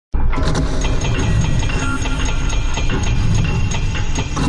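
Sound-designed logo intro: a heavy mechanical rumble with rapid metallic clanks and rattles, as of metal pieces locking together, starting suddenly.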